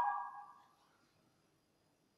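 The last held chord of a chamber ensemble of woodwinds and strings fades away in the church's reverberation over about half a second, then near silence.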